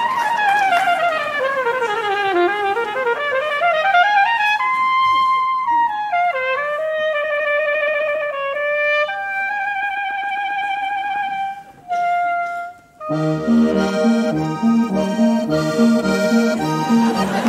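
Live Bavarian folk wind and brass music. A solo wind instrument plays a run that falls and climbs back, then held, wavering notes. After a short break about three-quarters of the way in, the full band comes in with a steady rhythmic accompaniment.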